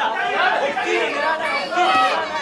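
Several voices calling out over one another from ringside during a kickboxing round.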